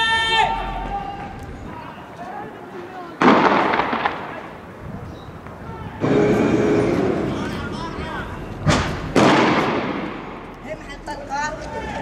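Three or four loud bangs of weapons fire, about three seconds apart, each followed by a long echoing tail. Shouting voices can be heard near the start and end.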